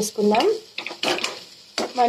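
A metal spatula stirring and scraping chicken pieces around a steel frying pan as they fry, with a few sharp scrapes about a second in and again near the end.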